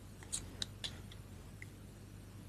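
A few faint, crisp clicks of tarot cards being handled in the hand, coming in quick succession in the first second and once more past the middle.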